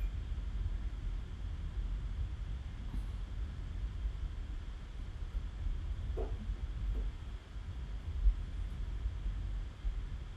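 Low, steady background rumble with no distinct events, and a couple of faint brief sounds about six and seven seconds in.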